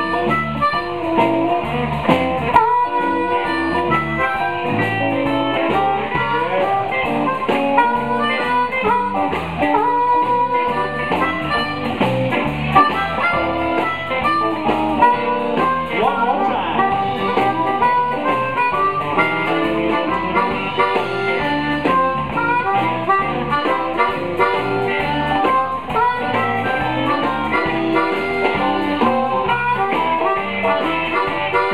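Live blues band playing, led by an amplified harmonica cupped against a handheld microphone and played over electric guitar and drums.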